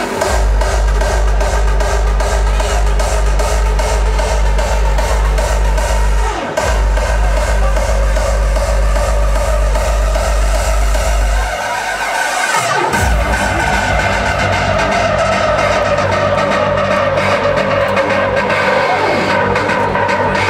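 Hardstyle DJ set played loud over an arena sound system, heard from the crowd. A steady pounding kick drum breaks briefly about six seconds in. Around twelve seconds in it drops out for about a second and a half under a falling sweep, then the bass-heavy beat comes back in.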